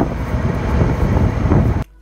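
Wind buffeting an outdoor handheld microphone, a steady, loud rumble that cuts off abruptly near the end.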